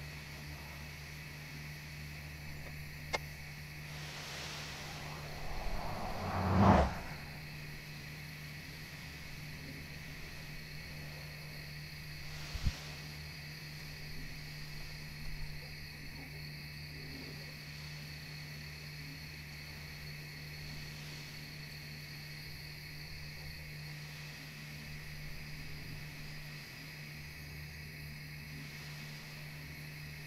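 Quiet night ambience: a steady high insect drone over a low hum. A brief rush swells and cuts off about six to seven seconds in, with a sharp click a few seconds earlier and another near thirteen seconds.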